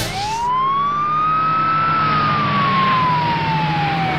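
Police vehicle siren wailing in a single slow cycle: the pitch rises for about two seconds, then falls slowly, over a steady low hum.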